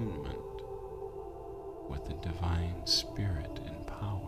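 Ambient meditation music: a bed of steady, sustained tones, with a low voice sounding over it for about a second and a half in the second half.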